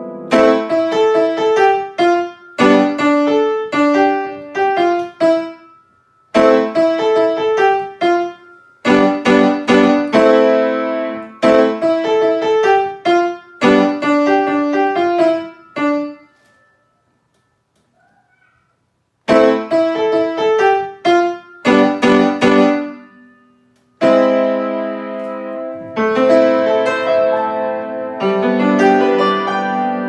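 Grand piano played by a young child: a lively tune in short phrases of notes with brief gaps between them. A silence of about three seconds falls just past the middle, and the last few seconds turn fuller and more sustained.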